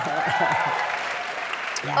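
A large audience applauding, with a few cheering voices, in answer to a show of hands; the applause dies away just before the end.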